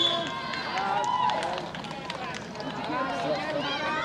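Several voices of youth players and spectators calling out at once, overlapping so that no words are clear, with a few short knocks about halfway through.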